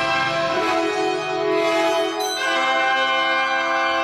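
Symphony orchestra playing sustained chords that shift to new pitches about half a second in and again about two and a half seconds in.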